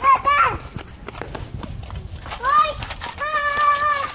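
A high-pitched voice calls out in short wordless exclamations, then holds one long steady call near the end.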